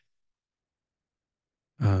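Near silence, with the audio gated to nothing, until a man starts speaking just before the end.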